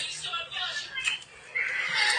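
Quieter, indistinct talking.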